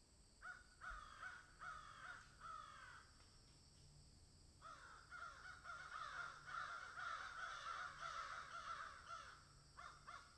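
Faint bird calls outdoors: several short calls, each falling in pitch, in the first three seconds, then a longer stretch of overlapping calls from about five seconds in.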